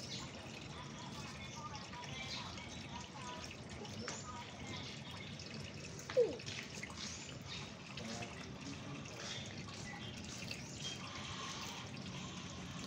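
Sulcata tortoise chewing leafy greens and carrot, with irregular small crunches and clicks throughout. One brief, louder sliding squeak about halfway through.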